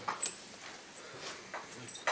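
Chalk squeaking on a chalkboard while writing: one short, high-pitched squeal about a quarter second in, then a few faint chalk strokes.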